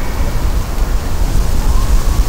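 Wind buffeting the microphone: a fluctuating low rumble under a steady hiss.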